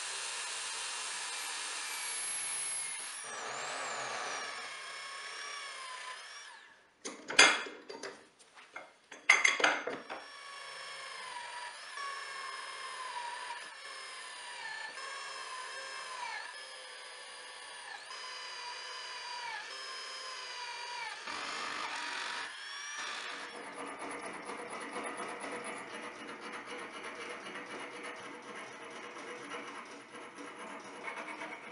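Electric drill in a drill stand running and drilling into aluminum square tubing, its motor dipping in pitch each time the bit bites, with a few sharp knocks about seven to ten seconds in. From about 23 seconds a hand file rasps on the aluminum tube.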